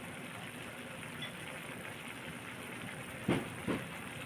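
Squid adobo simmering in a wok, the sauce bubbling and sizzling steadily. Two short knocks come close together near the end.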